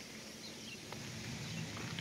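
Quiet outdoor background: faint, steady low-level noise with a single soft tick about a second in.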